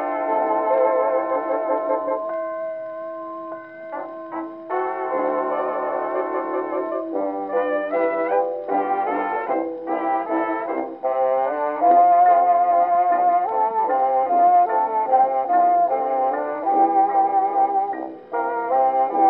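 A 1928 acoustically recorded dance-orchestra waltz on a 78 rpm shellac record, playing on a 1926 Victor Orthophonic Victrola Credenza with a steel needle. The band plays an instrumental passage in waltz time with no vocal.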